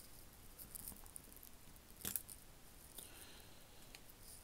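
Near silence broken by one faint, sharp click about two seconds in, from handling the open quartz watch movement as its plastic battery cushion is worked out.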